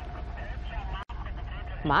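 Steady low rumble of engine and road noise inside a vehicle, under faint background voices. The sound cuts out for an instant about a second in, and a woman's voice calls out loudly near the end.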